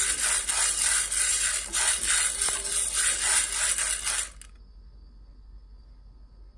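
Dry mung beans being stirred while roasting in a hot pan with wooden chopsticks: a dense rattling and scraping of the beans against the pan, which stops abruptly about four seconds in.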